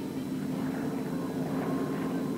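Aircraft engines running steadily in flight, heard as an even, low hum with no change in pitch.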